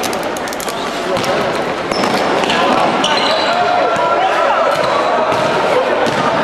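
Basketball game in a large sports hall: the ball bouncing on the court, players' voices, and sneakers squeaking in short rising and falling squeals from about two seconds in.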